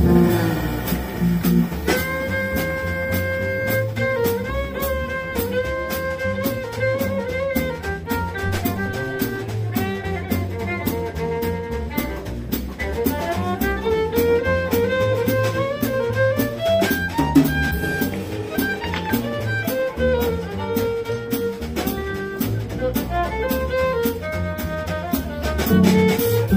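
Small acoustic swing-jazz combo playing live: a violin carries long bowed notes over double bass, guitar and drums.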